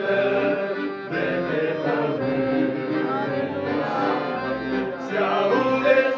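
A men's vocal group singing a religious song in harmony, accompanied by a Da Vinci piano accordion.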